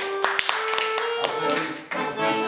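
Two accordions, a piano accordion and a Roland button accordion, playing together in held notes. Several sharp clicks or taps fall among the notes in the first second.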